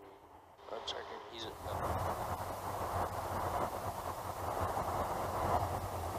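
Steady rushing in-flight noise inside a KC-135 Stratotanker's boom operator pod, with a low hum underneath, coming in about a second and a half in.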